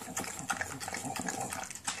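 English bulldog eating raw minced food from a steel bowl: rapid, irregular wet smacking and slurping, noisy enough to sound just like a monster.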